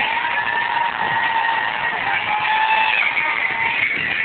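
Loud Turkish pop music with a sung melody line, muffled and smeared by a low-quality, overloaded recording.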